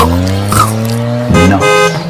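Sound-effect car horn giving two short honks near the end, after a low steady drone.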